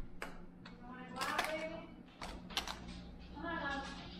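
A stack of Pokémon trading cards being scooped up and handled, the stiff cards giving a few crisp clicks and slaps against each other and the table.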